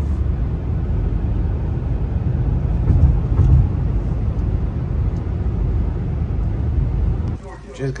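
Steady low road and engine rumble of a car driving, heard from inside the cabin; it cuts off abruptly near the end.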